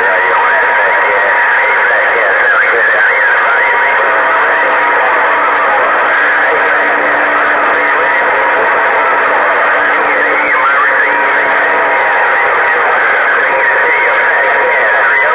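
HR2510 ten-meter radio receiving on 27.085 MHz: a steady hiss of band static with several steady heterodyne whistles and faint, garbled, off-tune voices. A low whistle comes in a few seconds in and drops out near the end.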